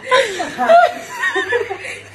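A person chuckling and laughing in several short bursts.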